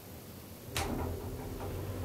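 A sharp click about three-quarters of a second in, then the low steady hum of an IGV roped-hydraulic elevator's pump motor starting up as the car sets off.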